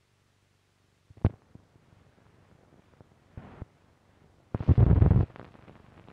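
Optical soundtrack of an old spliced 16mm film print running through a projector's sound head. After a second of silence comes a sharp pop, then scattered ticks and a short burst of noise. Near the end a loud, rough burst lasts under a second, then faint crackle follows: splice bumps and dirt and scratches on the optical track.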